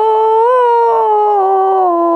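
A woman's singing voice holding one long note of a devotional bhajan, rising slightly about half a second in and then sliding slowly down in pitch.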